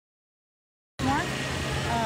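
The sound cuts out completely for about the first second, then returns abruptly with a voice over a steady low hum.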